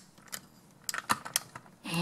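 Plastic magnetic building tiles (Magformers) clicking together as pieces are snapped onto a toy vehicle: a single light click, then a short cluster of clicks about a second in.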